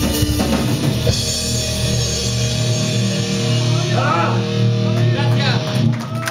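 Live rock band with drum kit, bass and electric guitar; about two and a half seconds in, the drums and deep bass drop out and a held guitar chord rings on, with voices near the end.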